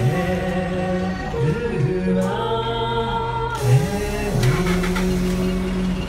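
A small group singing a hymn: slow, long-held notes that move to a new pitch about once a second.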